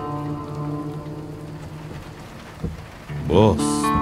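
Steady rain falling, with sustained background-score notes that fade out over the first half. Near the end comes a brief, loud sound whose pitch rises and falls, followed by a short burst of hiss.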